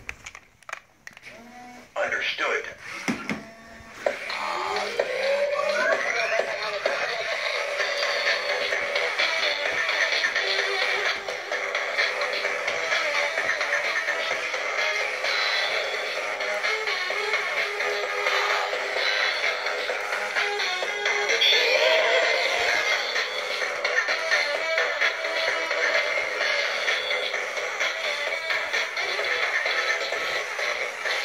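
Silver Robosapien V2 toy robot playing music with a synthetic voice through its built-in speaker as it moves its arms, thin-sounding with no bass. The music starts about four seconds in, after a few knocks, with rising swoops near the start and again in the middle.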